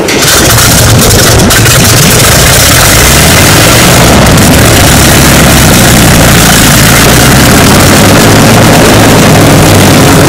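Napier Sabre 24-cylinder aero engine running loud and steady at high power, a deep even drone that cuts in suddenly at the start.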